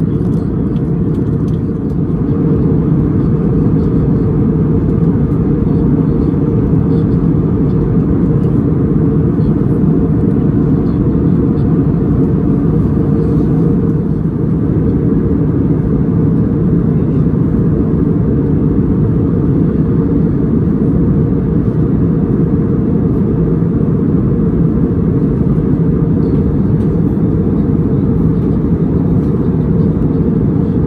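Steady low drone inside a jet airliner's cabin in flight: engine and airflow noise, even and unbroken.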